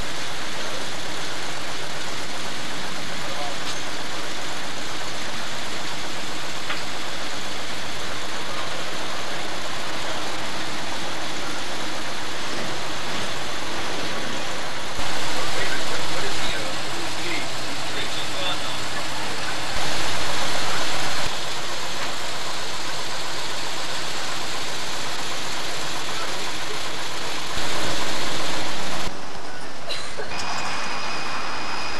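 Steady, noisy outdoor background recorded through a camcorder microphone, with indistinct voices of people gathered nearby; the level jumps up briefly three times.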